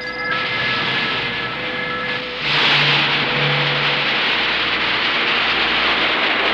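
Missile launch roar: a loud rushing noise begins a moment in and grows much louder about two and a half seconds in, then holds steady. Thin steady electronic tones sound under it at first.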